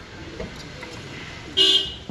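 A vehicle horn gives one short, loud honk near the end, over low background noise.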